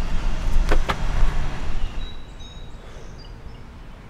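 A low rumble with two sharp clicks close together about a second in. After about two seconds it gives way to a quiet background with a few faint, high, short tones.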